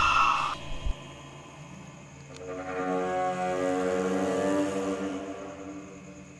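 Horror film soundtrack: a loud jump-scare sting cuts off about half a second in. After a short lull, a low droning tone swells, holds for a couple of seconds and fades away.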